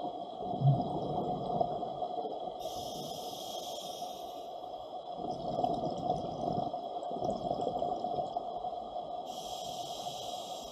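Scuba divers breathing through their regulators, heard underwater: a steady gurgle of exhaust bubbles, with two bursts of hiss about two and a half and nine seconds in.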